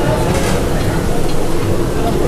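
Steady low rumble of a busy eatery's background din, with faint voices in it.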